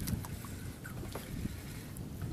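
Wind buffeting the microphone and water moving against the hull of a small fishing boat at sea, a low uneven rumble with a few faint clicks.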